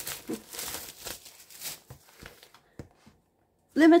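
Clear plastic wrap on a vinyl LP crinkling and tearing as it is pulled open by hand, dying away after about two and a half seconds.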